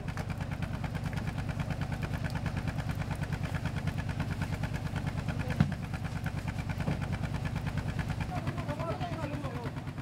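A fishing boat's engine idling with a steady, even pulse. A single sharp knock about halfway through, and faint voices near the end.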